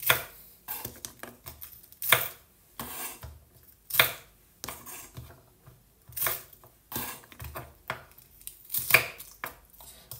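A chef's knife chopping pea pods on a wooden cutting board. The blade knocks on the board in short, irregular strokes, roughly one or two a second.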